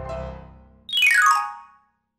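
A backing-music phrase fades out, then about a second in comes a slide-transition sound effect: a quick, bright run of electronic notes falling in pitch.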